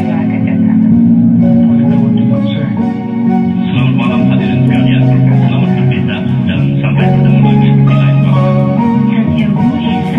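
Full mix of a slow electronic-classical track played back from a music-production session: a soft acoustic piano, an electric piano carrying the bass, and a spacey synth layered on top, with sustained bass notes underneath.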